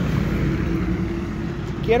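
A steady, low motor drone, with a voice starting near the end.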